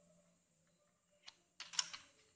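Faint handling of a pen on paper-covered desk: a single light click a little past halfway, then a short cluster of clicks and scraping near the end, as the marker is set aside.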